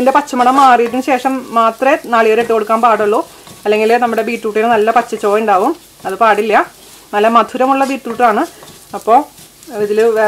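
Shallot, crushed-chilli and curry-leaf mix frying in coconut oil, sizzling as a spatula stirs it around the pan. A woman talks over it with short pauses, and her voice is the loudest sound.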